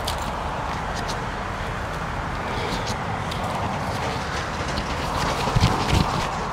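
Steady outdoor background noise, a low rumble with a hiss over it, broken by scattered light clicks and rustles.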